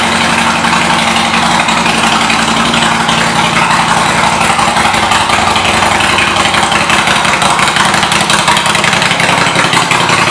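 A 2005 Honda VTX 1300R's V-twin engine idling steadily through aftermarket exhaust pipes.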